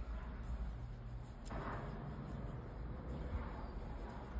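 Quiet, steady low background hum with a brief soft rustle about one and a half seconds in, from yarn and a crochet hook being worked by hand.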